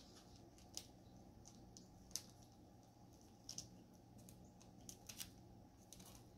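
Near silence with faint handling sounds: a few soft clicks and rustles as hands roll crescent dough on a parchment-lined baking sheet, over a low steady hum.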